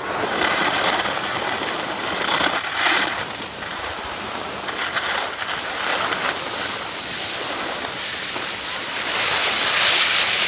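Skis sliding and scraping over packed snow, a steady hiss that swells in several surges.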